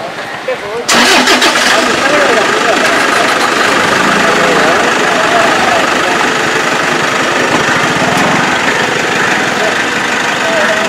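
A car engine starts up about a second in and keeps running loud and steady, with voices and a laugh over it.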